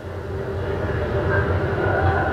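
Electronic drone from a television soundtrack: a steady low hum with higher held tones, slowly growing louder.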